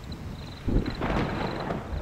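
Distant thunder rumbling, swelling up about two-thirds of a second in. A faint high chirping of insects fades out by about a second in.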